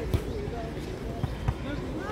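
A volleyball being struck during a digging drill: two sharp thuds, one just after the start and one about a second and a half in.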